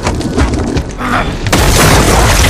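Film sound effects: deep booms, then a sudden loud crash of rock and dust about one and a half seconds in that keeps going.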